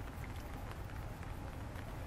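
Steady low outdoor background rumble, with a few faint ticks and small rustles.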